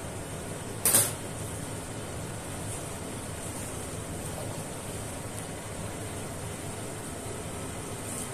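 Steady background hum in a small room, with one short sharp noise about a second in.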